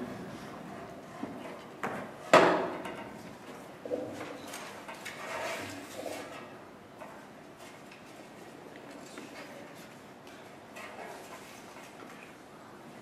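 Handling noise as a music stand and sheet music are adjusted on a stage: a sharp knock about two seconds in, a few smaller knocks, then soft clicks and rustling.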